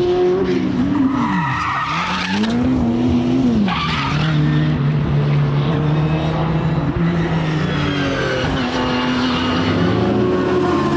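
Classic Mini racing car's engine working through a corner. In the first four seconds the revs dip and climb twice, with tyre squeal. The note then holds steady and rises again near the end.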